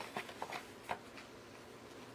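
Scissors snipping a paper pattern: several short, sharp snips, most of them in the first second.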